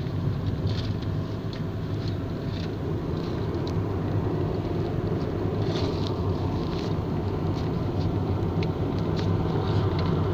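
Steady low rumble of engine and tyre noise heard inside a moving vehicle, with a few faint light ticks.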